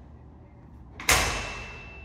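A single loud bang about a second in, sharp at the start and dying away over most of a second with a ringing echo, leaving a thin high ringing tone.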